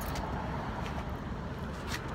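Steady low outdoor rumble of road traffic, with a faint click about two seconds in.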